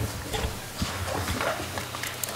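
Scattered soft knocks and paper handling on a meeting table, picked up by the table microphones over a steady low hum.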